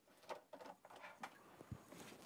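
Near silence, with a few faint clicks and soft rustles of hands working at a plastic septic riser.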